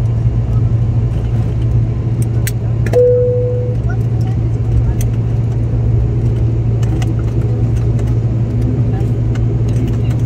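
Steady low engine drone heard inside an airliner cabin as the aircraft rolls out and taxis after landing, with scattered sharp clicks and one short tone about three seconds in.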